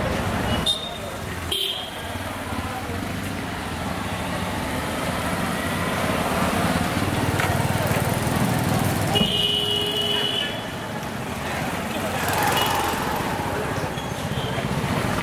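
Busy street traffic with cars and motorcycles passing and voices of passers-by mixed in. Short horn toots near the start, and a horn sounding for about a second about nine seconds in.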